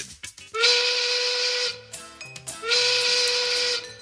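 Show intro jingle: two long whistle blasts of about a second each, steady in pitch over a hiss, with a short run of musical notes between them.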